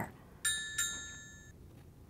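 A bright bell-like chime dinging twice, about a third of a second apart, each ding ringing on briefly and fading.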